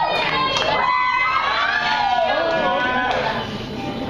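Audience cheering and whooping, many overlapping high-pitched calls, thinning out a little near the end.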